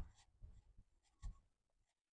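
Faint handling noise on the microphone: scratching and rubbing, with a soft low thump at the start and another about a second and a quarter in. It cuts off suddenly just before the end.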